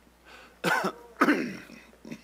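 A man coughing twice, about half a second apart, the second cough longer and rougher with some voice in it.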